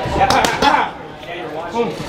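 Boxing gloves striking focus mitts in a quick flurry of sharp slaps during the first second, with short 'ah' shouts on the punches, then a brief lull and another shout near the end.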